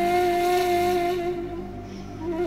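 Background music: a wind instrument holds one long note over a low steady drone, fading toward the end.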